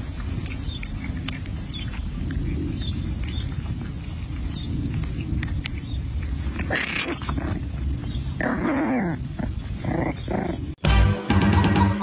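Puppies growling continuously in a low rumble as they compete for food, with a few higher whines near the end. Music starts abruptly near the end.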